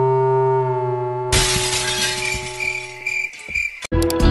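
A held reedy chord, the end of a falling run of notes, then about a second in a loud crashing, shattering noise with a repeated high ring, lasting over two seconds. It cuts off abruptly just before the end.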